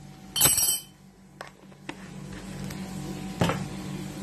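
Kitchenware clinking on a counter: one sharp, ringing clink about half a second in, then a few light taps and a single knock near the end. A steady low hum sits under it all.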